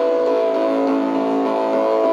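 Live music from a synthesizer-led band: a droning chord of held synthesizer notes that shifts slightly partway through.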